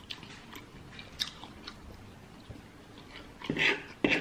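Close-miked chewing of soft, creamy pasta, with small wet mouth clicks scattered through. A louder, brief sound comes near the end.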